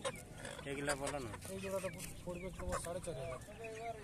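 People talking, with Aseel chickens clucking among the voices.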